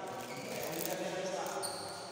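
Spectators talking indistinctly, echoing in a sports hall, with a short high squeak near the end.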